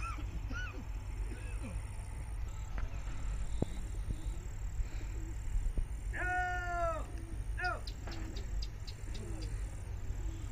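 Distant shouting voices: a few short calls and one longer rising-and-falling call about six seconds in, over a steady low rumble.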